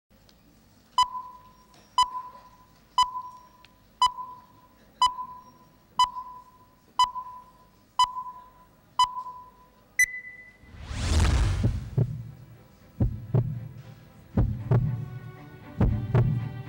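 Countdown beeps from a projected countdown video: nine short beeps one second apart, then a higher, slightly longer final beep. A loud whoosh with a low boom follows, and music with a heavy low beat begins.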